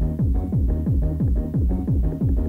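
Fast techno from a recorded DJ set: a kick drum on every beat, each one dropping in pitch, under a repeating synth riff.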